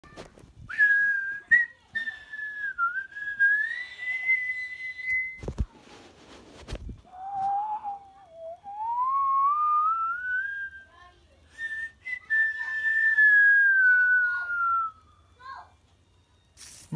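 A person whistling long, sliding notes: a high held note, then a slow rise in pitch, then a slow fall. Two handling thumps come about five and a half and six and a half seconds in.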